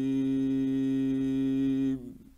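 A male Quran reciter's voice holding one long, steady note, the drawn-out end of a verse in tajweed recitation, which cuts off suddenly at the very end. It is an old 1960s radio recording.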